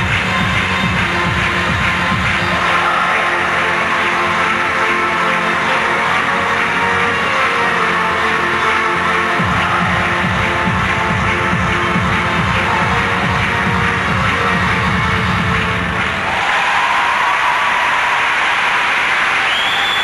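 Skating program music with a steady driving beat; about four seconds before the end the beat stops and crowd applause and cheering swell in its place.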